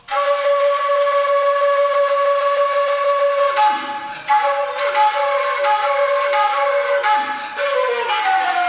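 Fula flute (tambin) playing solo: one long held note for about three and a half seconds, then a run of short repeated notes, several of them with a brief low sound sliding downward beneath.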